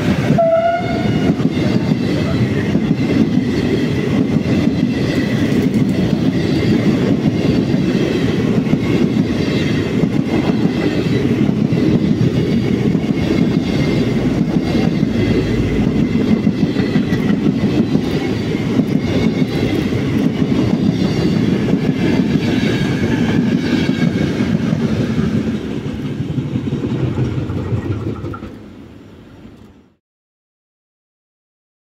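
Vintage Wagons-Lits carriages of the Venice Simplon-Orient-Express rolling past at speed: a loud, steady rumble of wheels on rail with a thin high tone running above it. The sound eases off late on and fades out at the end.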